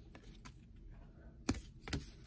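Football trading cards being flipped through by hand: quiet handling of card stock with two sharp clicks about half a second apart near the end.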